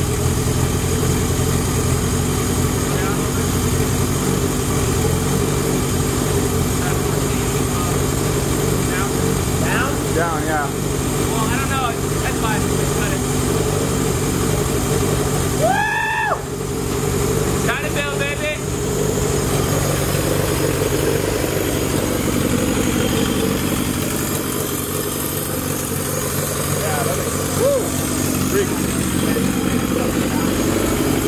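Freshly built four-cylinder Honda engine idling steadily, just after starting. A man gives one loud shout about halfway through, with other short vocal sounds around it.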